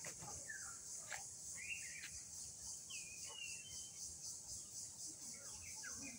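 A steady high-pitched insect drone with a slight pulse, with short bird chirps a few times over it.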